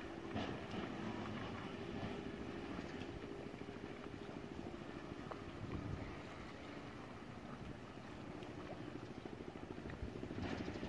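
A boat engine running steadily, a low drone with a fine even pulse, with wind on the microphone.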